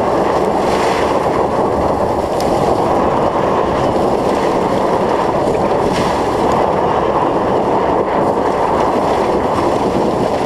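Loud, steady rush of wind on a camera microphone held out the side window of a moving pickup truck, mixed with the truck's road noise.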